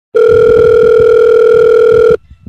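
A loud, steady electronic tone like a telephone dial tone, held at one pitch for about two seconds and cutting off abruptly.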